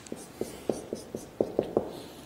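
Marker pen writing on a whiteboard: about eight short, quick strokes as characters are written out.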